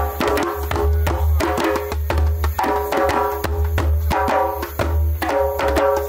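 Several djembes played together by hand in a steady, fast rhythm, deep bass strokes pulsing again and again among many sharper, ringing hand strikes.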